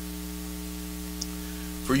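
Steady electrical mains hum on the microphone's audio line: a constant low buzz held on a few fixed pitches.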